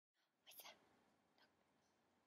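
Near silence: room tone, with a faint short whisper about half a second in.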